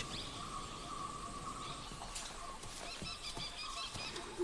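Faint forest ambience: a steady high hum runs under a few soft bird chirps that come about three seconds in.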